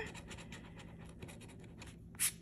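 A coin scraping the coating off a paper scratch-off lottery ticket in rapid short strokes, faint.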